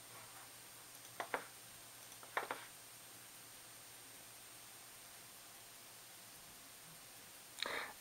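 Quiet room tone with a faint steady hum, broken by two brief soft sounds about a second in and again about two and a half seconds in. A man starts talking just before the end.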